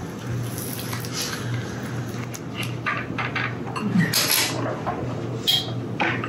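A kitchen knife cutting through a lemon on a wooden cutting board, with a spatula working a crêpe on an electric crêpe maker: scattered light clicks, taps and scrapes, the sharpest a little after four seconds, over a steady low hum.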